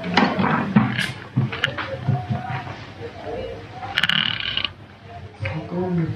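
Indistinct talking, broken by a few sharp clicks, with a short high-pitched ringing or squeal about four seconds in.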